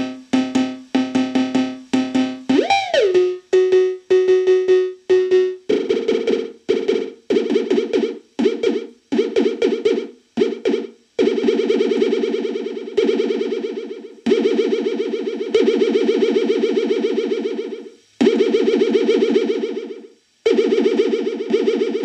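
DS-8 clone analog drum synth, triggered by stick hits on a drum pad, playing pitched synth-percussion hits. About two and a half seconds in the pitch swoops up and back down. In the second half the notes ring longer, one to two seconds each, with a fast flutter.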